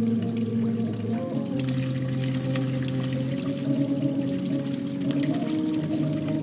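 Hydraulophone (water organ) sounding sustained, organ-like notes as fingers block its water jets. A low note and the tones above it shift to new pitches several times, about one and a half, three and a half and five seconds in. The hiss and splash of the water jets run underneath.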